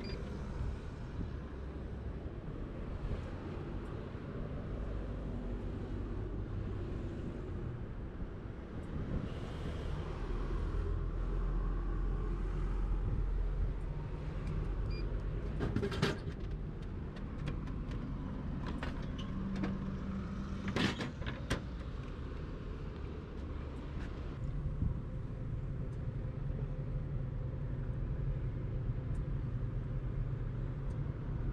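Steady low rumble of street traffic, with two sharp clicks about halfway through and a few seconds later.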